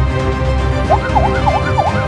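A fast yelping siren sweeping up and down about three times a second comes in about a second in, over steady background music.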